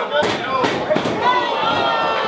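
Shouting voices in a wrestling hall, with several sharp thuds and slaps of bodies and hands on the ring canvas in the first second and a half.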